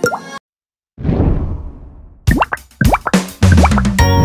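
Cartoon logo-sting sound effects: a short rising bloop, a half-second gap, a soft swell that fades away, then a quick run of rising plopping pops. Children's-song music starts with a low note in the last half second.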